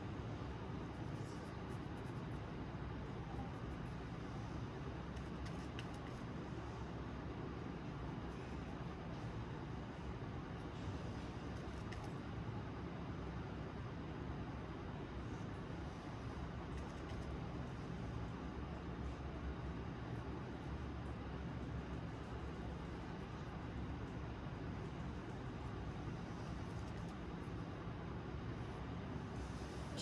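Steady low background noise with no distinct events, even throughout.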